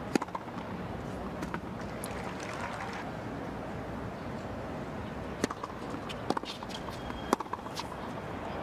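Tennis ball struck by rackets on a hard court: a serve and a short rally, sharp hits about a second apart in the second half, over a steady low stadium hum. A few lighter taps come earlier.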